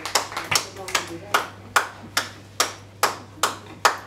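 Hands clapping a steady, even beat, about two and a half claps a second: flamenco palmas.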